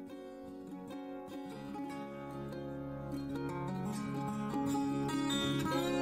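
Soft background music of plucked strings, growing slowly louder.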